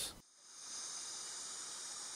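Steady, high-pitched chorus of insects, a continuous even hiss.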